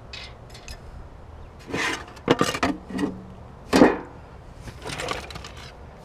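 A hand rummaging through junk in a metal dumpster, with small items clattering and scraping in several short bursts; the loudest comes a little before four seconds in.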